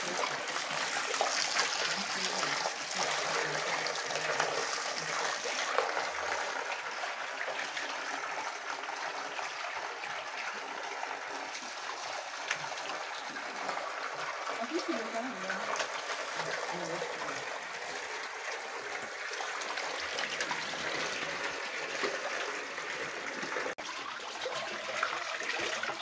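A steady stream of water pouring from a plastic pipe and splashing into a shallow concrete fish pond.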